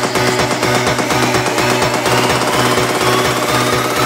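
House track build-up: a rapid, evenly pulsing synth riff with the deep bass cut out and a sweep slowly rising in pitch.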